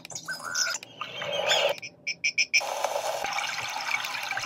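Built-in nature-sound alarm tones of an alarm clock lamp playing through its small speaker as they are stepped through: short chirping calls and a few quick pulses over a steady rushing hiss, with brief breaks where one sound gives way to the next.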